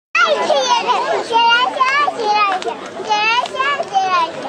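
Several high-pitched children's voices calling out and chattering over one another, in short rising and falling cries.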